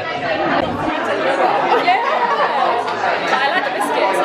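Many voices talking over one another: busy restaurant chatter in a large room, with a couple of sharp clicks near the end.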